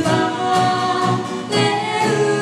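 A man and a woman singing a Japanese folk song together live, accompanied by two strummed acoustic guitars.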